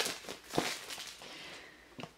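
Plastic shrink-wrap crinkling as it is pulled off a tarot deck box: a short rustle at the start, a louder one about half a second in, then fading crackle.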